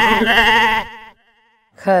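A long, wavering, bleat-like cry that stops just under a second in, followed by a fainter wavering cry.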